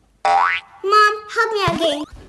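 A quick rising, slide-whistle-like cartoon boing, followed by a child's wordless vocal sounds that slide up and down in pitch.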